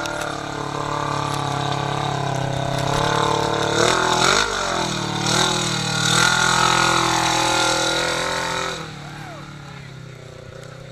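Polaris RZR XP 1000's parallel-twin engine revving hard under load as the side-by-side churns through a deep mud hole, the revs dipping sharply and climbing again about four seconds in. Near the end it fades quickly as the machine pulls out and away.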